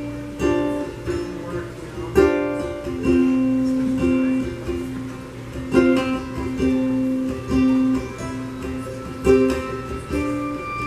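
Acoustic string band playing the instrumental opening of a slow song, led by a plucked ukulele with guitar and mandolin, notes picked singly rather than strummed hard.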